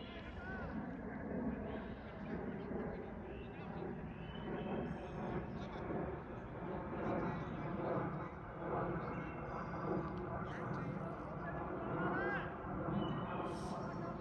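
Indistinct, distant chatter of several voices over a steady outdoor background, with no clear words.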